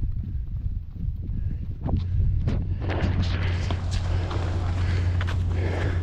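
Several runners' footsteps slapping on a concrete path over a steady low rumble, growing louder from about two seconds in.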